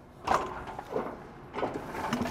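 Aluminum boat lift frame rattling and scraping as one side is levered up with a hoist lifting bar, with a few sharper knocks along the way.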